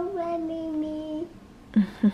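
A wordless voice holding one steady, sing-song note for about a second, followed by a short 'ay' near the end.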